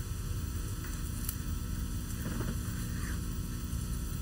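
Steady electrical mains hum with light hiss, with a few faint soft rustles as the false beard is handled.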